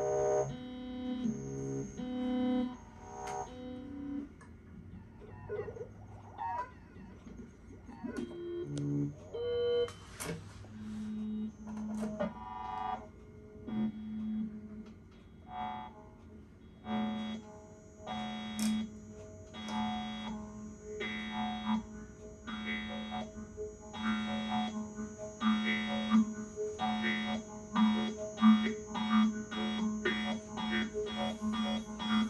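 Electronic improvisation on Moog Moogerfooger analog effects units. It opens with short blasts of stacked synth-like tones, then a sparse stretch of wavering, gliding pitches. From about eleven seconds in, a low pulse repeats with bright tone bursts over it, coming faster and denser toward the end.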